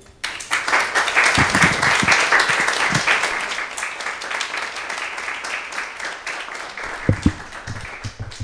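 Audience applauding, swelling in the first second and strongest over the next few seconds, then tapering off. A couple of low thumps come near the end.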